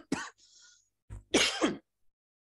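A man coughing and clearing his throat: a short burst at the start, then a longer one about halfway through.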